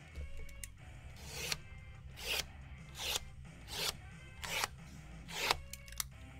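Six short rasping rubs at a steady pace, about one every 0.8 seconds, as of a hand rubbing or scraping across packaging, over faint background music.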